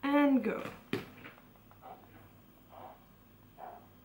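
Spoken "go" to start a drawing timer, followed by a sharp click, then faint short scratches of a pen on paper, about once a second, as drawing begins.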